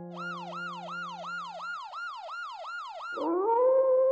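A siren-like wail in quick falling sweeps, about three a second. It stops about three seconds in, and a howl rises and holds steady.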